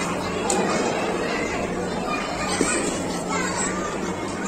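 Children and adults chattering over one another, several voices at once, with a faint steady low hum beneath.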